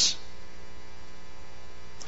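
Steady electrical mains hum with a faint hiss in the background of an old speech recording, heard in a pause between sentences; a man's word trails off in a hiss at the very start.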